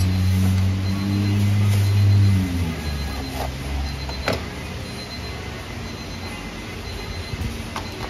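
A steady low motor hum drops in pitch and fades about two and a half seconds in. About four seconds in, a knife knocks once on a plastic cutting board as a folded chocolate waffle is cut in half, with a few lighter knocks of utensils near the end.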